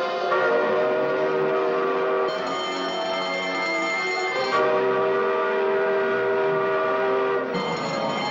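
Prison alarm going off: a large electric wall bell ringing continuously together with a steady horn-like wail. The bell's high ringing comes and goes, strongest about two seconds in and again near the end.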